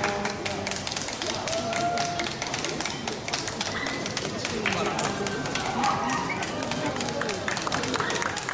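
Spectators clapping steadily and unevenly, with crowd chatter underneath.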